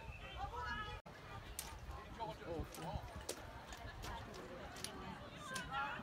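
Distant shouts and calls from rugby players and spectators, too far off for words to be made out, with scattered short knocks. The sound drops out for an instant about a second in.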